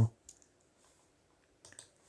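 A few faint clicks from computer input as the browser page is refreshed: one shortly after the start and a quick pair near the end.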